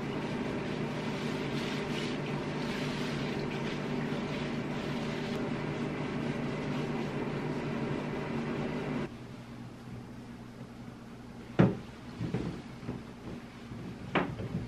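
Water running into a bathtub with a steady hum, shut off suddenly about nine seconds in; then a sharp knock and a few lighter clunks in the tub.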